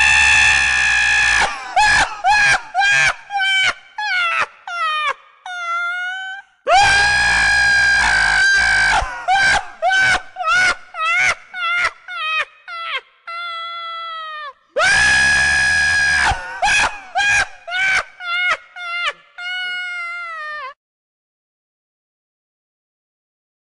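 A high-pitched voice screaming: one long held scream, then a quick run of short yelps and a drawn-out wail that droops in pitch. The same sequence plays three times, starting about seven and fifteen seconds in, and cuts off a second before the end.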